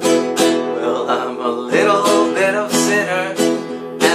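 Acoustic guitar strummed in a steady rhythm of chords. From about a second in, a man's voice sings a wavering wordless line over the strumming.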